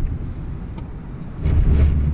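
Road and engine rumble heard from inside a moving car's cabin. It is steady at first, then swells louder for about half a second near the end.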